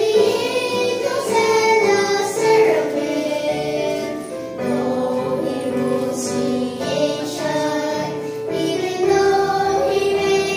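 A small group of young girls singing a gospel children's song together, holding sustained sung notes through the lines "Praise the Prince of Heaven; join the angels and the seraphim" and "Though He rules creation".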